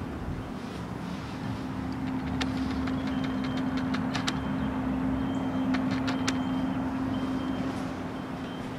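A steady low machine hum with one constant tone, growing a little louder about a second and a half in, with scattered sharp clicks over it.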